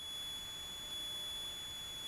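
Steady faint high-pitched electronic whine over a light hiss on the aircraft's intercom audio line while its voice-activated squelch is closed, so no engine noise comes through.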